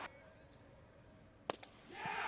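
Near silence, broken by one sharp click about one and a half seconds in and a fainter click just after.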